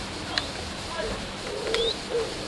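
Pigeon cooing in soft low notes in the second half, with two sharp clicks, one about half a second in and one near the end, each followed by a short rising squeak.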